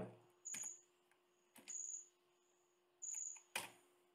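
A few scattered single clicks from the computer desk, about four in all and each brief and separate, as at a keyboard or mouse during coding. A faint steady hum sits underneath.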